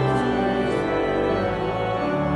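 Organ playing slow, sustained chords, the held notes shifting from one chord to the next about every second.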